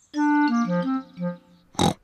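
A short cartoon music jingle of several separate held notes, about a second and a half long, played as the scene changes. A brief noisy burst follows near the end.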